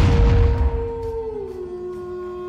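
A wolf howl sound effect: one long call that rises, holds, and drops in pitch about a second and a half in. It sits over a loud rushing hit that fades within the first second and a steady music drone.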